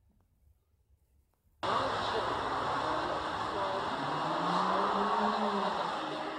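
Near silence, then an abrupt cut about a second and a half in to steady road and engine noise inside a car cabin, with a voice faintly under it.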